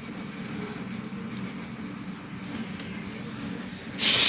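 A steady, low mechanical drone without any clear change or distinct event.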